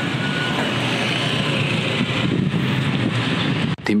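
Steady outdoor background noise: wind rushing on the microphone over a low mechanical hum. It runs evenly and stops just before the end.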